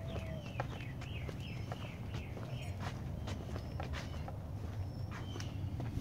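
Footsteps on a concrete driveway, with a bird's short, falling chirps repeating in quick series in the background.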